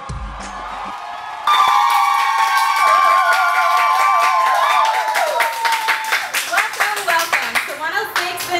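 Brief intro music, then a small group of women cheering with long held shouts and clapping. The claps come through sharply in the second half.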